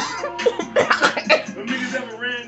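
A man's short, breathy vocal bursts, several in quick succession, heard through a TV speaker over background music.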